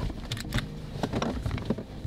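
Clothing rustling and a handful of light clicks and knocks as a person shifts and reaches forward in a car seat.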